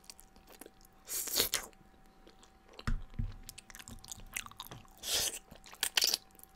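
Noodles being eaten from a frying pan with chopsticks: two long slurps, one about a second in and one about five seconds in, with chewing and small mouth clicks between and a couple of low thumps near the middle.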